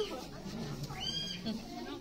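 Kiwi calling: one high, arched whistle that rises and falls, about a second in.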